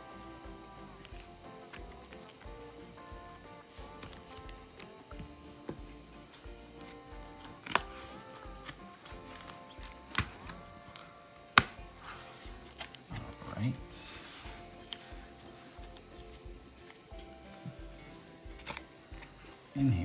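Scissors cutting open a taped cardboard mailer, then the cardboard and a plastic sleeve being handled and slid apart. A few sharp clicks stand out, the loudest about two-thirds of the way through, with rustling after them. Steady background music plays throughout.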